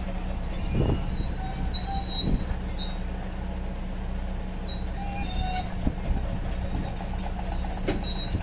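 Caterpillar crawler dozer on a lowboy trailer: its diesel engine runs with a steady low hum while its steel tracks give several clanks and short high metallic squeals against the steel trailer deck.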